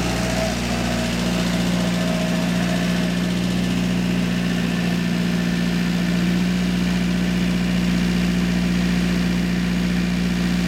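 A farm vehicle's engine running steadily with a low, even hum. A fainter higher whine rises just before the start and fades out about three seconds in.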